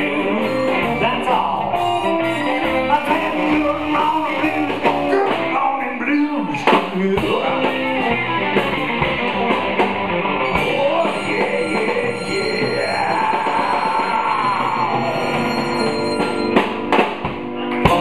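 Live electric blues band playing: electric guitar, bass, drums and harmonica blown into a hand-held microphone, with a few sharp drum hits near the end as the song closes.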